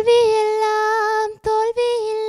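A young woman singing solo into a microphone without accompaniment: one long steady note for just over a second, then two shorter held notes after a brief breath.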